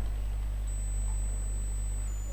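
Steady low electrical hum in the recording, with a thin high-pitched whine and faint hiss above it; no speech.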